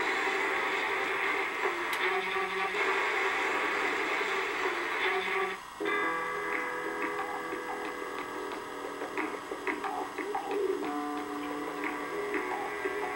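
Background music from a television playing in the room, made of sustained notes, with a short break about six seconds in.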